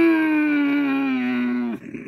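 A woman's long, drawn-out 'mmm' moan of delight, a comic imitation of the Frankenstein monster's groan, slowly falling in pitch and cutting off shortly before the end.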